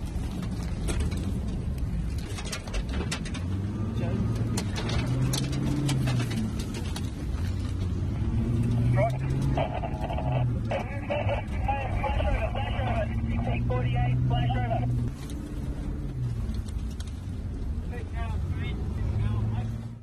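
Fire truck engine heard from inside the cab, its pitch rising and falling as it drives through a bushfire, over a continuous rushing noise with sharp cracks in the first few seconds. From about nine to fifteen seconds a thin, tinny chattering sound rides on top.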